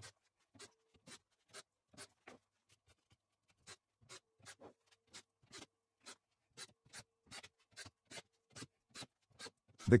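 Faint, evenly spaced clicks, about two a second, with a faint steady hum at times, from a cordless drill-driver being used to fasten M4 screws into the rails.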